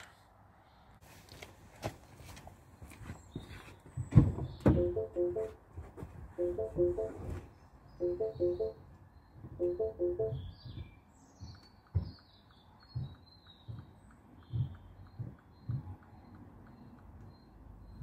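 Electronic warning chime from the car, repeating as four short groups of beeps about every two seconds. A few dull thumps come between the chimes, and faint bird chirps sound in the second half.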